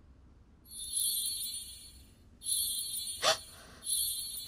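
A shimmering, high-pitched sound effect of steady tones begins about a second in, fades, and returns; a brief sharp sound comes near the end.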